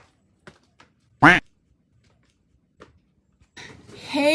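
A single short duck quack about a second in, with only a few faint clicks around it.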